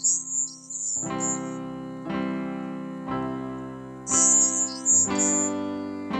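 Slow, calm piano music: chords struck about once a second and left to ring and fade. A high, fluttering shimmer sounds over the piano at the start and again about four seconds in.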